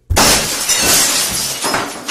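A sudden loud crash of shattering glass, followed by a spray of tinkling debris that fades away over the next two to three seconds.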